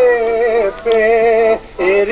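Greek folk dance tune led by a clarinet (klarino) playing long, ornamented, wavering notes, the first sliding slowly downward, with a brief break before the next phrase.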